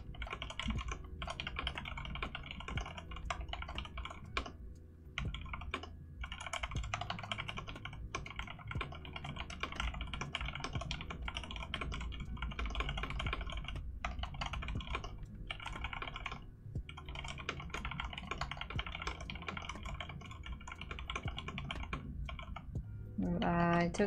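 Fast continuous typing on a mechanical keyboard: a dense stream of key clacks, broken by a few brief pauses.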